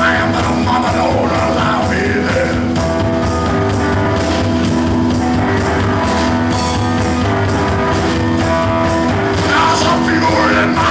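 Two-piece rock band playing live: keyboard and drum kit, with singing in the first couple of seconds and again near the end.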